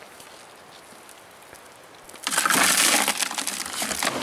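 A shovel scooping soil and tipping it onto a mesh classifier screen over a bucket: a loud gritty crunching and scraping that starts about two seconds in and lasts to the end, after a quiet start.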